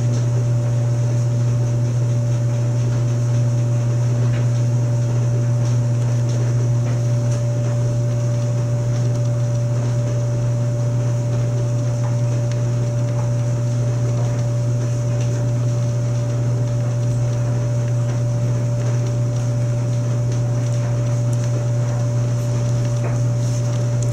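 A steady low machine hum with a fainter, higher steady tone above it, unchanging in level.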